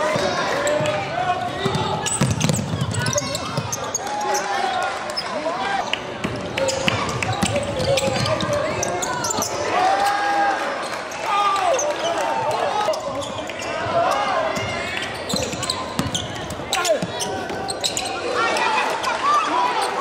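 A basketball bouncing on a hardwood gym floor during play, with many indistinct voices of players and spectators talking and calling out.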